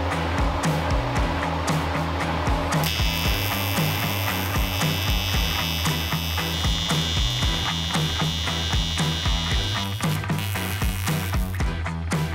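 Background music with a steady beat. From about three seconds in, a steady high-pitched buzz from a TIG welding arc joins it as a pipe is welded onto an aluminium radiator's fill neck. The buzz shifts once midway and stops just before the end.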